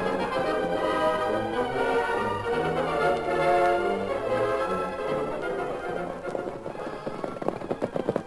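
Orchestral music bridge with brass, held notes changing step by step and easing off slightly near the end: a transition cue between scenes in an old radio drama recording.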